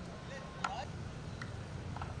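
Steady low background rumble with a short sharp click about two-thirds of a second in and a fainter one a little later.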